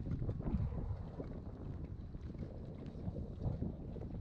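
Wind buffeting the camera microphone, a steady low rumble with scattered small ticks.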